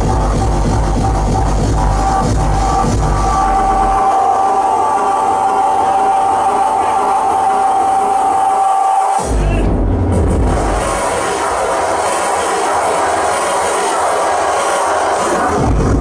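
Loud electronic music played live from a laptop and mixer. The heavy bass beat drops out about four seconds in, leaving a held high tone; after a short break just past nine seconds the bass comes back briefly, then thins out again.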